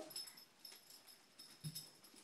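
Near silence: faint room tone with a few soft clicks and one brief low sound shortly before the end.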